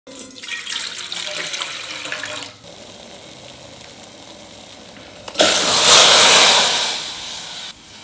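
Water poured from a steel vessel into a stainless steel pot, splashing and gurgling as the pot fills, for about two and a half seconds. A quieter steady hiss follows. About five seconds in, a much louder rushing hiss starts and fades away over the next two seconds.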